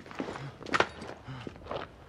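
Footsteps: several short, sharp steps at uneven intervals.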